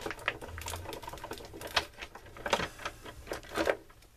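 Hand-crank Cuttlebug die-cutting machine being cranked, rolling the plate sandwich with a die and a sheet of aluminum foil through its rollers. It makes a run of irregular clicks and creaks, with a few louder cracks near the middle and end.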